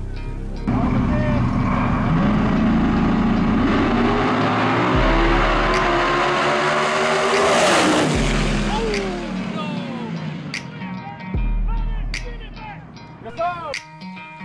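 Two G-body drag cars launch about a second in and accelerate hard down the strip, engines revving higher and higher. They are loudest as they pass near the middle, then drop in pitch and fade into the distance. A music bed with a low beat runs underneath.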